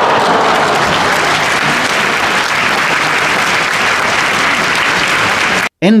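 Crowd applauding in an arena, a steady clapping that cuts off abruptly near the end.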